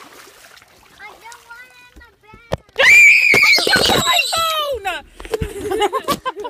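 A child's loud, high-pitched scream breaks out suddenly about three seconds in and trails off in falling cries over the next two seconds, with water splashing under it.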